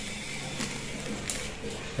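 Low steady background hum with a couple of faint light clicks, from a small plastic toy helicopter being handled in the hands with its battery flat.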